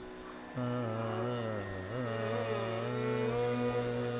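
Carnatic devotional music: a male voice singing long, slowly bending wordless notes over a steady drone. The voice comes in about half a second in, after a short breath.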